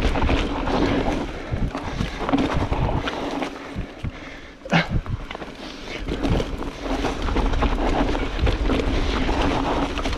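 Mountain bike riding down a loose dirt trail covered in dry leaves: tyres rolling over leaves and soft soil, with wind buffeting the microphone. A sharp knock about five seconds in.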